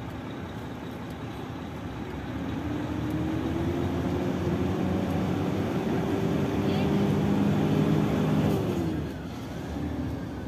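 Heavy truck's diesel engine heard from inside the cab as the truck pulls away. The revs climb slowly and the engine grows louder, then drop off about nine seconds in.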